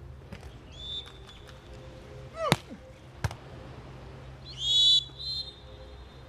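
Beach volleyball being served and played: a volleyball is struck twice, about two and a half and three and a quarter seconds in, sharp slaps on the ball. A short whistle sounds about a second in, and a louder shrill whistle near the end is the loudest sound.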